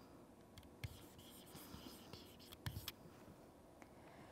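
Near silence with faint scratching and a few light taps of a stylus writing a word by hand.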